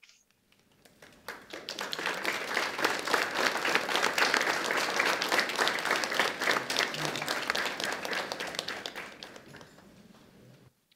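A small audience applauding. The clapping starts about a second in, builds, and fades away near the end.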